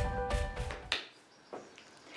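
Intro theme music with a steady beat that ends about halfway through, leaving quiet room tone.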